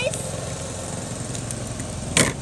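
Steady low drone of a small engine running in the background, with a few faint clicks.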